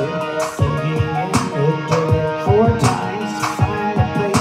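A band playing an instrumental passage of a rock song with no vocals: drums striking a steady beat, a little less than a second apart, over a bass line and sustained instrument tones.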